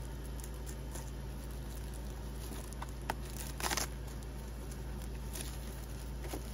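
Scissors snipping through a clear cellophane sleeve, with soft clicks and plastic crinkling as it is opened. The loudest crinkle is a short one just past halfway.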